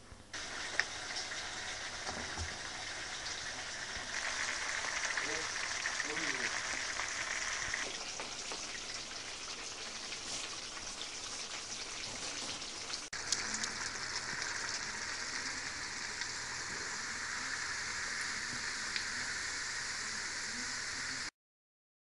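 Sliced potatoes frying in hot oil in a pan: a steady, dense sizzle and crackle. It breaks off for an instant about two-thirds of the way through, then cuts off suddenly near the end.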